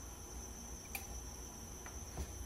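Quiet room tone: a steady high-pitched whine over a low hum, with two faint clicks from small hand tools being handled, about a second in and near the end.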